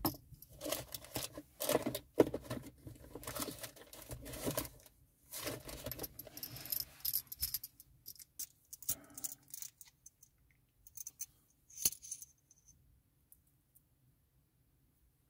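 Plastic model-kit parts clicking and clattering as they are handled and set down, with rustling of a paper instruction sheet. The handling thins out after about eight seconds to a few scattered clicks, one sharper than the rest near the end.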